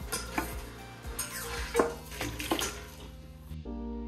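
Several sharp clinks and knocks of a siphon tube and racking cane against glass carboys as cider racking gets under way, over background music. The clinks stop at a cut near the end, leaving only music.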